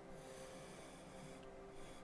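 Faint charcoal strokes scratching across smooth newsprint, with a short break about a second and a half in.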